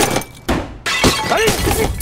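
A flower vase smashing into a flat-screen TV and breaking the screen: a loud crash of shattering glass right at the start, then a second, smaller crash about half a second later. A man's voice cries out after it.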